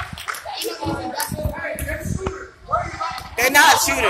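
Indistinct voices of players and bench in a gym, with a louder voice calling out near the end, over scattered sharp knocks and slaps from the basketball game in the hall.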